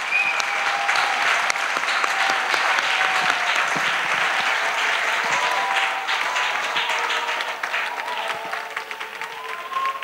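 A large congregation applauding, dense clapping that dies down over the last couple of seconds.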